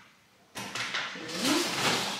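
Groceries being put away in an open fridge: plastic packaging rustling and containers knocking against the shelves. This starts suddenly about half a second in and carries on with several sharper knocks.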